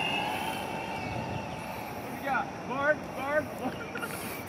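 A steady low outdoor rumble with a person's voice over it: three short rising-and-falling sounds, like brief laughter, in the second half.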